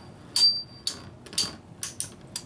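Two Beyblade spinning tops, Samurai Ifrit and Pirate Orochi, clashing in a plastic stadium bowl: about four sharp clacks as they hit. The loudest comes about half a second in, with a brief high ring after it.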